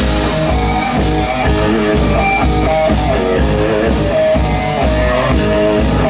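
Live rock band playing an instrumental passage: strummed and picked guitars over a steady drum-kit beat with a cymbal hit on each beat.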